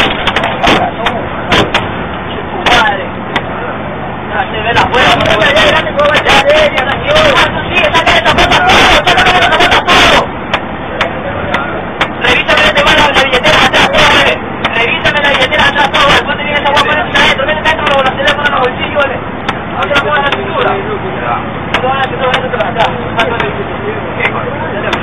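Raised, indistinct voices and frequent sharp knocks and bumps over the steady rumble of a moving bus, picked up by the bus's low-quality security-camera microphone; the knocks come from the camera being jostled and handled.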